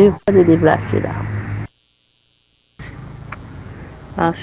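A voice speaks briefly and cuts off into about a second of dead silence. Then a faint, steady low buzz with hiss follows, like line or electrical hum.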